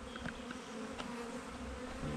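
A mass of Carniolan honey bees buzzing in a steady, even hum, with a few faint clicks.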